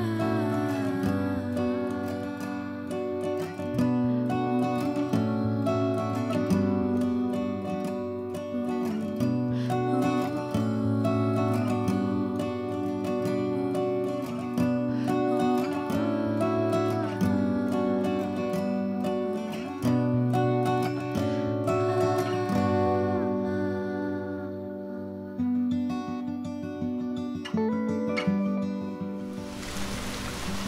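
Background music led by acoustic guitar, its chords changing every second or two.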